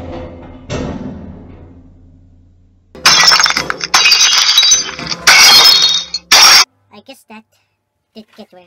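Two drum hits from a music track fade out. Then come four loud bursts of crashing, shattering noise, strongest in the high range, cut off abruptly after about three and a half seconds.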